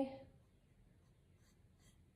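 Near silence with a couple of faint, brief scratches of a thin paintbrush drawn over bare wood near the end.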